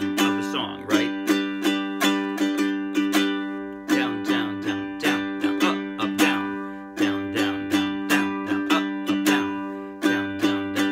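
Ukulele strummed on a single held G chord in a repeating strum pattern of strong down and up strokes followed by quick down strokes. Each round of strums ends with the chord left ringing briefly before the pattern starts again, about every three seconds.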